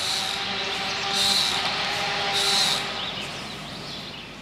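Steady outdoor water noise with a bird calling three times, about a second apart.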